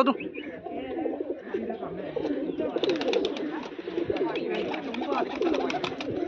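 A flock of domestic pigeons cooing in a loft, a continuous low warbling. From about three seconds in there is a run of light clicks and taps.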